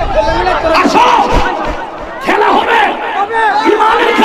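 A large crowd of men shouting and cheering together, many voices overlapping, with a short lull about halfway through before the shouting swells again.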